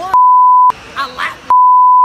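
Two loud censor bleeps, each a steady high-pitched beep lasting about half a second, dubbed over a man's speech to blank out words. The second comes about a second and a half after the first, and a few words of speech are heard between them.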